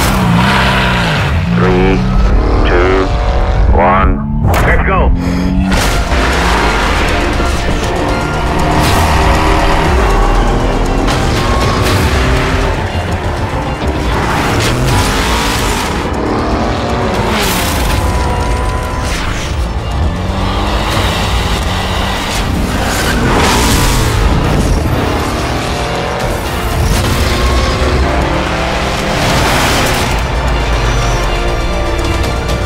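Mercedes-AMG GT4 race car's twin-turbo V8 revving up and falling back repeatedly, mixed with soundtrack music.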